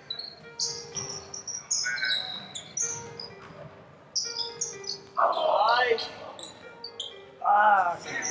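Basketball sneakers squeaking on a hardwood gym floor in a string of short, high-pitched chirps, with players shouting. The two loudest shouts come about five seconds in and again near the end.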